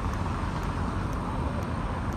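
City street traffic: a steady rumble of cars going by on the road.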